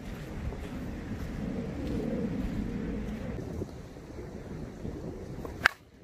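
Low wind rumble on the microphone, then near the end a single sharp crack as a brand-new DeMarini Vanilla Gorilla composite slowpitch softball bat hits the ball.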